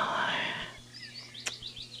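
A short breathy exhale at the microphone, then faint bird chirps: a quick run of short high notes in the second half, with one sharp click among them.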